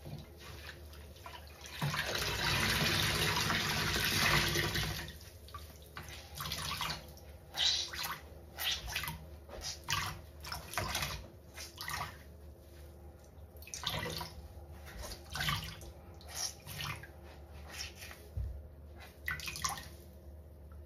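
Water-soaked sponges squeezed by hand in a basin of sudsy water: a long rush of water wrung out about two seconds in, then a run of short wet squelches as the sponges are squeezed again and again.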